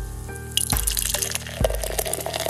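Beer pouring into a glass: a fizzing, splashing pour that starts with a sharp click about half a second in. It plays over background music with a slow, steady beat.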